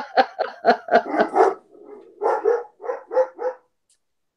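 A dog barking in quick volleys, heard over a video call: a run of barks, a short pause about a second and a half in, then several more.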